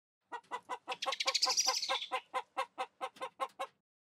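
Chicken clucking in a rapid, even run of about six clucks a second, growing louder and then fading out near the end.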